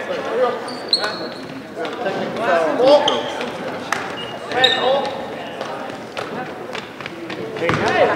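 Basketball bouncing on a hardwood gym court, with several sharp knocks and brief high squeaks, under the voices of players and spectators.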